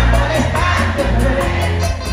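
Live amplified music from a band with a singer and acoustic guitar over a strong, steady bass, heard from among the audience with crowd noise mixed in.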